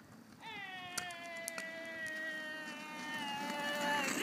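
A long high-pitched yell from a single voice, held for about three and a half seconds and sliding slightly lower in pitch, with two sharp clicks under it near the start.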